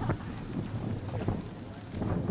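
Wind rumbling on the microphone, with faint voices of an outdoor crowd in a pause between speakers.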